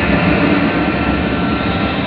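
Soundtrack of a projected 3D show played loud over a hall's speakers: sustained music tones over a dense, steady low rumble, an engine-like sound effect.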